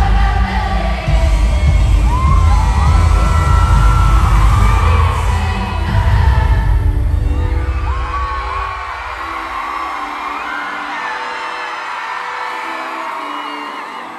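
Live pop concert through an arena PA: a woman sings into a microphone over an amplified backing. The heavy bass fades out about eight seconds in, leaving held chords under the voice, with occasional whoops from the crowd.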